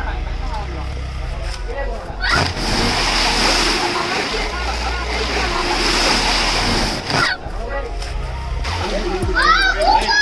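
A person plunging into the water of a deep open well: a sudden splash about two seconds in, followed by several seconds of churning water that cuts off about seven seconds in.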